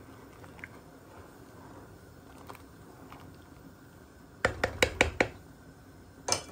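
A wooden spatula stirs milk and grated carrot in a metal pan, faintly. Near the end comes a quick run of sharp clacks against the pan.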